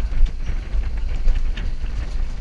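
Rail-guided bobsled ride car running fast down its track: a steady low rumble with scattered clatter from the wheels on the rails.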